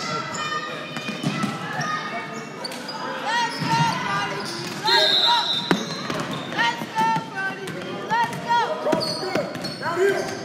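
Basketball bouncing on a hardwood gym floor while sneakers squeak in many short chirps as the players run and cut, with voices in the background.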